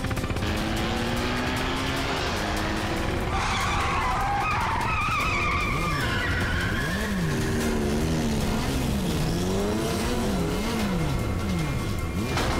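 Motorcycles riding at speed under dramatic background music, with a wavering high squeal a few seconds in. From about halfway, a whine rises and falls over and over.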